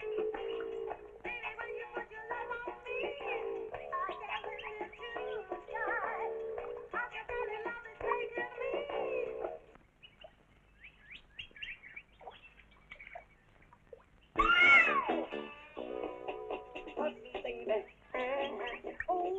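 Film background score with melodic instruments that fades out about ten seconds in. After a few quiet seconds comes a single loud cry whose pitch rises and then falls, like a meow, and music starts again near the end.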